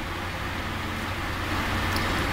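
Cardboard box and its plastic bag of contents being pulled open by hand, a steady rustling and scraping that grows a little louder toward the end.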